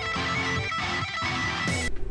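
Electric guitar rock music with strummed chords, ending in a brief burst just before the end.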